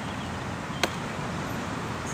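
Steady background hum of road traffic on a nearby highway, with one sharp click a little under a second in.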